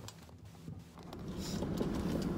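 A few faint clicks and handling noises, then from about a second in a steady low rumble inside a car.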